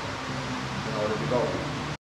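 Mostly speech: a man begins "all right" over a steady low background hum, ending in a sudden cut.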